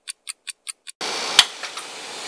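Edited-in clock-ticking sound effect: about five quick, even ticks, roughly five a second, over silence for about a second. Then the steady machine noise of the room returns, with a sharp click about a second and a half in.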